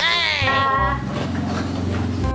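A loud, high cry that sweeps down in pitch over about the first second, trailing into a lower held sound, over background music.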